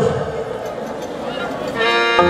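A man's shout through a PA loudspeaker ends at the start. Near the end, an Andean string band of violins and harp strikes up with a held note.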